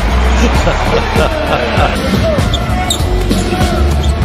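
Basketball being dribbled on a hardwood arena court, with the game's background noise and music running under it.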